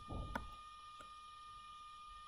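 Quiet room tone under a steady faint high-pitched electrical whine, with a short breath-like noise at the start and two small clicks, the first sharper, about two-thirds of a second apart.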